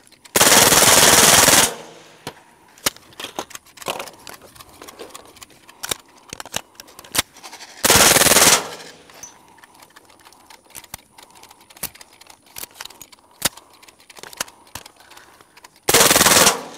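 Suppressed full-auto AR-22 (CMMG .22 LR conversion upper with a KG Made Swarm titanium suppressor) firing short bursts: one of about a second and a half, a shorter one under a second about seven seconds later, and another starting right at the end, with scattered small clicks between bursts. The gun, fouled after a long run of full-auto fire, is getting sluggish.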